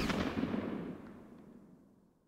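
The tail of a loud blast sound effect in a title sequence: a boom that dies away in a long echo over about a second and a half, the low end lingering longest.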